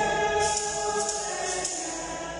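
Choir singing a hymn, several voices holding sustained notes, with a high hiss that comes and goes.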